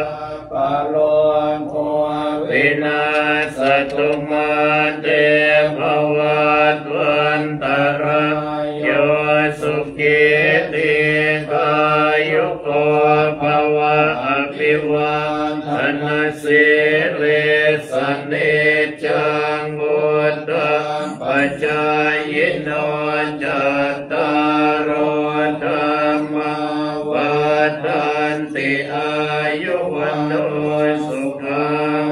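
A group of Thai Buddhist monks chanting Pali blessing verses (paritta) in unison, a steady, level-pitched recitation that runs on without pause.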